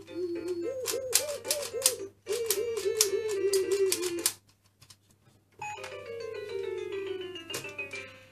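Electronic sound effects and tune from a VTech Tiny Tot Driver toy: a warbling tone over rapid high ticking for about four seconds, then, after a short pause, a falling run of beeping notes.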